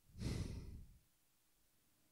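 A person sighing into a close microphone: one breathy exhale lasting under a second, then near silence.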